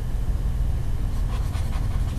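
Steady low electrical hum in the recording, with a short faint breath about one and a half seconds in.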